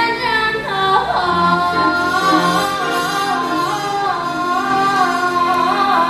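Women singing with instrumental accompaniment in a live musical-theatre number, holding a long note with vibrato from about a second in.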